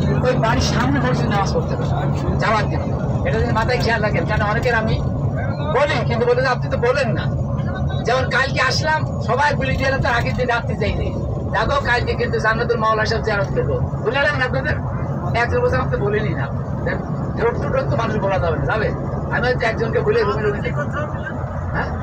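Voices talking inside a moving bus or truck, over the steady low drone of its engine and road noise.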